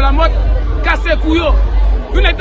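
A person talking over background crowd babble, with a steady low rumble underneath.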